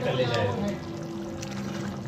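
Metal ladle stirring thick egg curry in a steel pot, with liquid sloshing and a few faint clinks against the pot, over a steady low hum.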